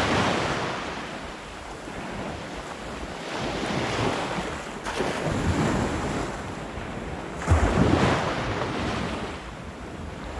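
Small waves breaking and washing up a sandy beach in swells every few seconds, the strongest about three-quarters of the way through, with wind buffeting the microphone.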